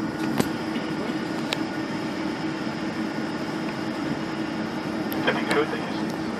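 Steady cabin noise inside a taxiing Boeing 747: engine and air-conditioning hum with a steady low drone. A few faint clicks come in the first two seconds, and a brief louder sound comes near the end.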